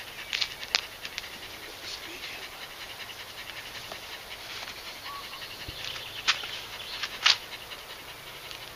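Border collie–kelpie cross panting fast and steadily, worked up from high-energy trick training. A few sharp clicks cut through it, the loudest near the end.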